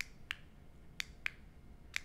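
About five short, faint clicks at uneven intervals over quiet room tone.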